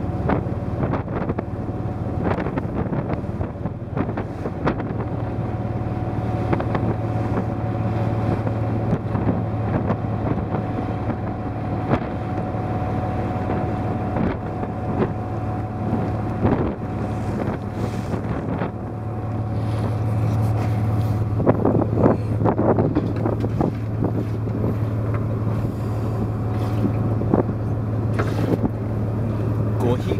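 Fishing boat's engine running steadily under way, a constant low hum that grows a little stronger about two-thirds of the way through, with wind buffeting the microphone and water washing past the hull.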